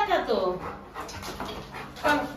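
Labrador retriever whimpering: one falling whine in the first half-second, then softer panting.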